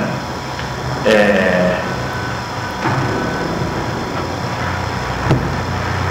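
Steady low rumble and hum with hiss. A brief voice sound comes about a second in, and there is a sharp click near the end.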